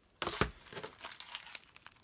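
Plastic-wrapped planner sticker sheets crinkling as they are picked up and handled: an irregular run of crackles, loudest just after the start.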